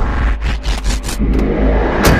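A car engine running low as the car pulls up, with a run of short crackles from about half a second to a second and a half in.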